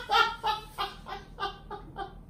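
A man laughing hard: a quick run of short, high-pitched laughs, about four a second, fading toward the end.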